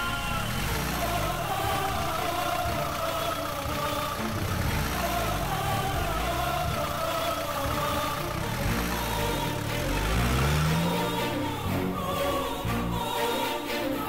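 Background music over a Willys jeep's engine revving and running as the jeep pulls away, its pitch rising and falling several times.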